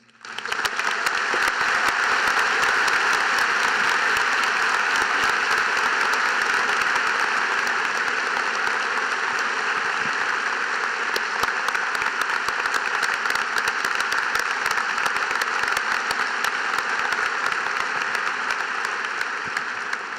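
A large audience applauding steadily. The clapping swells up within the first second, holds, and dies away right at the end.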